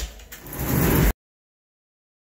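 A click, then a scraping noise that builds and cuts off abruptly a little over a second in, followed by dead silence where the audio was edited out.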